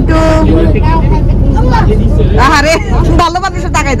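Steady low rumble of a moving open-deck tour boat, its engine and the wind on the microphone, under people talking.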